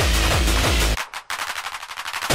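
Gabber hardcore DJ mix: fast, heavy kick drums pounding, then about a second in the kick drops out and a rapid rattle of sharp hits, like machine-gun fire, takes over.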